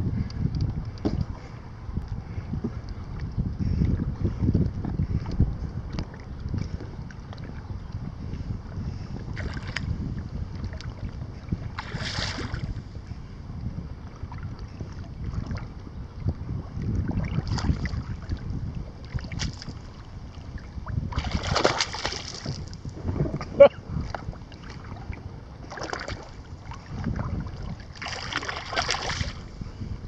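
Wind buffeting the microphone, with choppy water lapping and splashing close by in short bursts every few seconds. One sharp knock comes late on.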